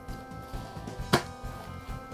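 Quiet background music with sustained tones, and a single sharp click about a second in from a folder being handled.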